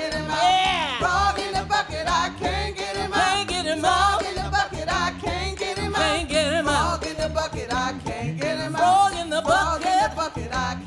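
Live music: voices singing a call-and-response ring-game song over djembe and conga hand drums.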